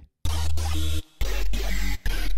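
Xfer Serum software synth playing a custom wavetable patch made to speak the word 'pigeon' in a synth voice: two loud, buzzy, noisy notes, the second lower in pitch and starting after a short gap about a second in.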